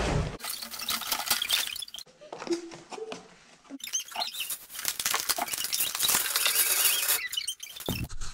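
Plastic packaging crinkling and rustling as it is handled and opened, in two stretches with a short lull between, the second longer.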